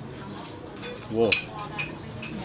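A man's short exclamation, "whoa", a little over a second in, with a few faint clinks of ceramic bowls and spoons on the table.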